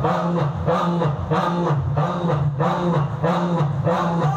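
A large group of men chanting dhikr together in unison, repeating a short phrase invoking Allah over and over in a steady, swaying rhythm.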